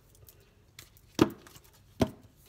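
A tarot card deck handled on a tabletop: a sharp knock about a second in and another at the very end, with faint card handling between.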